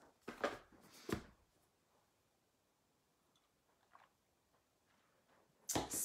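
Near silence in a small room, broken by a few brief soft handling noises and a sharp click in the first second and a half, and one faint tick about four seconds in.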